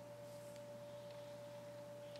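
Quiet room with a faint, steady high-pitched hum held at one pitch, and a lower hum beneath it.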